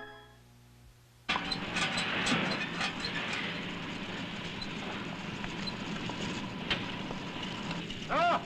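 The tail of a brass music cue fades out. After about a second of quiet, a steady background noise starts suddenly, with scattered clicks and knocks through it.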